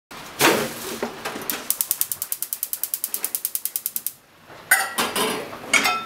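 Gas stove's electric igniter clicking rapidly, about ten clicks a second for nearly three seconds, then stopping as the burner lights. A knock comes before it, and near the end come a few ringing metal clanks as a stainless steel bowl and a frying pan are moved about on the burner grates.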